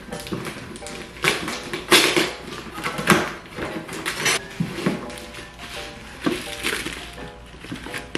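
A cardboard shipping box being opened and unpacked, with rustling and several sharp thunks and taps as the bubble-wrapped contents are pulled out. Light background music plays throughout.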